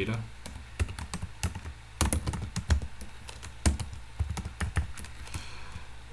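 Typing on a computer keyboard: irregular key clicks in short runs with brief pauses between them.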